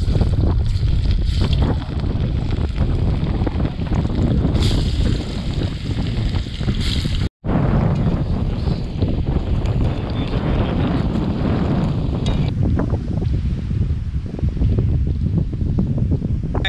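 Strong wind buffeting the microphone in a dense, steady rumble, with surf noise mixed in. The sound cuts out abruptly for an instant a little past seven seconds in.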